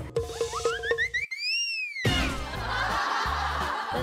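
Comedy sound effect added in the edit: a quick run of rising notes, then a whistle-like tone that glides up and back down. Background music follows for the last two seconds.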